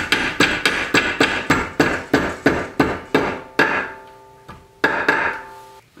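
Ball-peen hammer tapping a thin metal throttle rod held in a bench vise, bending it to 90 degrees, at about three blows a second. After a short pause, two more blows come near the end, and the metal rings after them.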